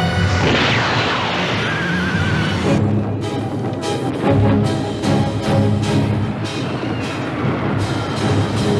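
Orchestral film-trailer score with creature cries: a cry sweeping down in pitch near the start and a short quavering high cry about two seconds in. From about three seconds the music turns to a run of sharp, regular percussion hits.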